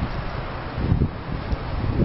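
Wind buffeting the microphone in irregular low gusts over a steady rushing hiss of water running down an open channel.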